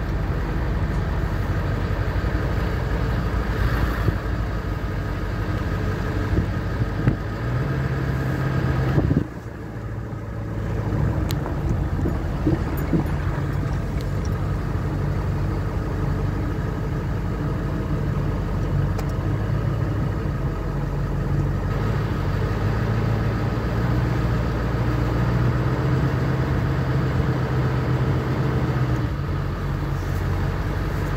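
Pickup truck engine running at low speed, heard from inside the cab as the truck drives slowly along a dirt track. The steady hum dips briefly about nine seconds in, then picks up again.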